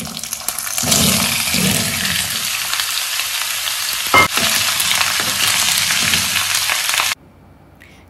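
Cubes of yellow pumpkin dropped into hot oil in a cast iron kadai, sizzling loudly from about a second in, with a single sharp knock midway. The sizzle cuts off suddenly near the end.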